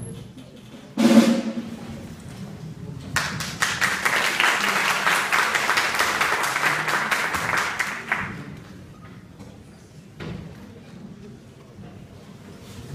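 A single loud thump about a second in, then audience applause of dense rapid clapping for about five seconds, dying away about eight seconds in.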